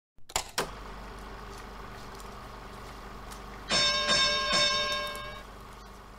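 A couple of clicks, then a low steady hum, then three quick bright ringing notes, one after another, that fade away.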